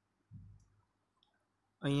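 A soft low thump, then a faint click about a second later; a man's voice starts just before the end.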